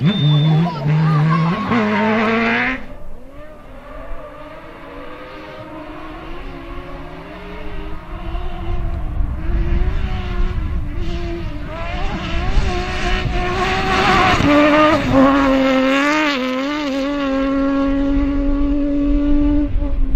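Rally car engines on a gravel stage. The first car revs hard, rising in pitch, and cuts off suddenly about three seconds in. A second car's engine then grows louder as it approaches and revs with a wavering pitch as it passes, settling to a steady note near the end.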